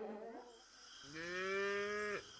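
A cow mooing once: a single call of about a second, holding a steady pitch, starting about halfway through.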